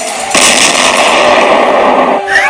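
Explosion sound effect: a sudden loud blast about a third of a second in, carrying on as a dense rush of noise to the end.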